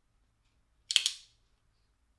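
A single sharp metallic click about a second in: a Stan Wilson non-flipper flipper folding knife's Damascus blade snapping open and locking, an action described as snappier.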